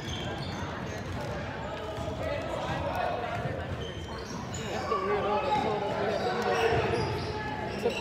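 A basketball being dribbled on a hardwood gym court, with background voices.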